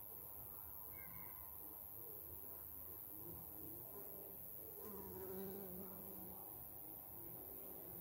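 Honeybees buzzing in flight, a faint hum that wavers in pitch; one bee passes closer and louder about five seconds in.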